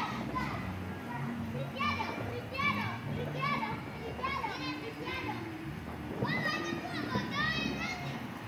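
Children shouting and squealing outdoors in repeated high-pitched calls, about one burst a second.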